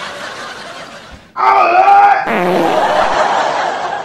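A person bursts into loud, high-pitched laughter about a second and a half in, which runs on as breathy laughing.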